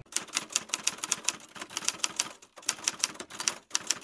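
Typewriter keys clacking as a typing sound effect: a fast run of sharp clicks, about seven a second, with a few brief breaks, stopping at the end.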